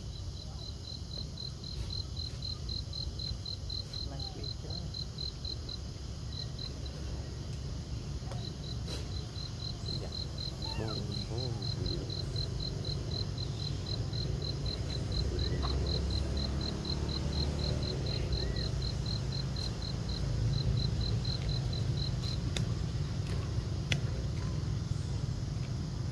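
An insect calling in a high, evenly pulsed trill of about five pulses a second, with a pause a few seconds in and stopping near the end, over a steady low rumble.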